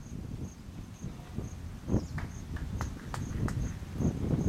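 An insect chirping in a steady high-pitched pulse about twice a second over a low rumbling background. A single dull thump comes about two seconds in, followed by a few sharp clicks.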